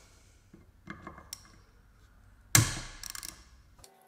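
Light metallic clicks of a hand Torx driver working a small bolt on an aluminium cylinder head. About two and a half seconds in, a sharp clunk as a hand tool is put down on a wooden bench, followed by a brief rattle of small ticks.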